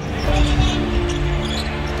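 Game sound from a televised NBA game: a basketball being dribbled on the hardwood court over the steady noise of the arena.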